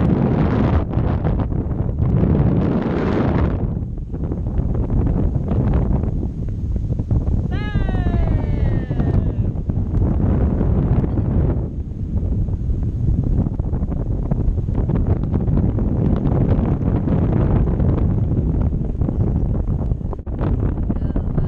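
Wind buffeting an action camera's microphone in paragliding flight, a loud, gusty rush that swells and eases. About eight seconds in, a quick run of short falling squeals is heard over it.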